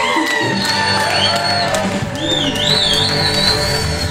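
Live band of guitar, bass and drums playing, with a steady bass line under repeated drum hits and a wavering high melodic line.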